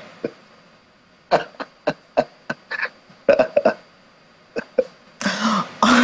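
People laughing in short, breathy bursts, a few a second, building to a longer run of laughter near the end.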